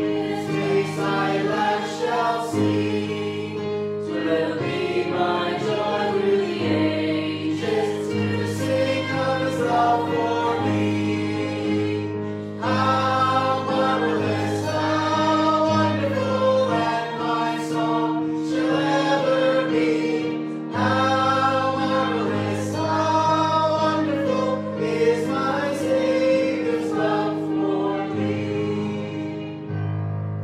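A hymn sung by several voices over held chords on an electronic organ-style keyboard, in phrases of a few seconds each.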